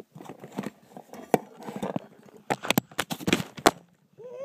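Handling noise of a plastic fashion doll worked close to a phone microphone: irregular clicks, taps and rustling, busiest in the second half.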